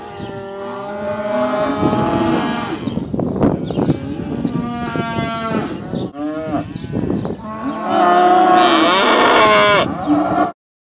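Several beef cattle mooing, long calls one after another and at times overlapping. The loudest call comes in the last couple of seconds.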